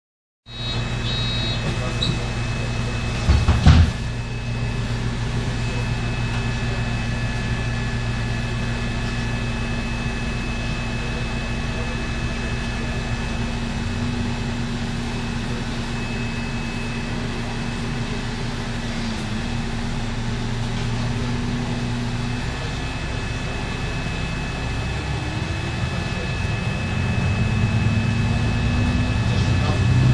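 City bus engine running, heard from inside the passenger cabin, a steady low hum with a faint high whine above it. There is one loud knock a few seconds in. Near the end the engine note rises and grows louder as the bus pulls away.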